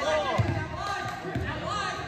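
Basketball being dribbled on a hardwood gym floor, a few low bounces, with voices in the hall.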